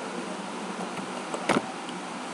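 A single sharp click from the computer being operated, about one and a half seconds in, over a steady background hiss.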